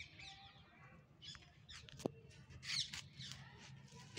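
Faint chirps of small birds: several short, high calls scattered through, with one sharp click about two seconds in.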